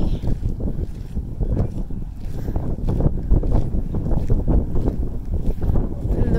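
Wind blowing across a phone's microphone, a low rumble that gusts up and down.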